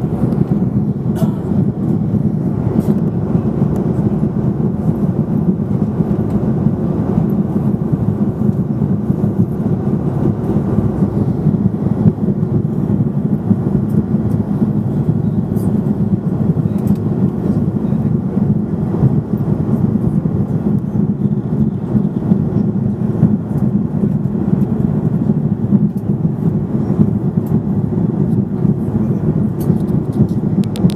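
Airliner cabin noise in flight, heard at a window seat over the wing: the steady drone of the jet engines and rushing air, strongest in the low range and unchanging throughout.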